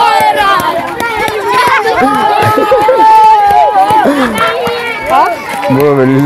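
Many children's voices chattering and calling out over each other as a crowd of schoolchildren walks past, with one long high-pitched call in the middle.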